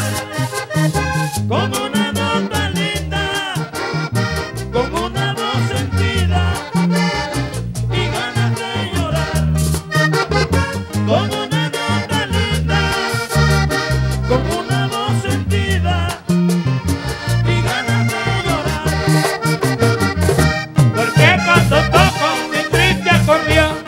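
Vallenato band playing live, the accordion leading with melodic runs over a bass line and a steady percussion rhythm, with no singing in this instrumental break between verses.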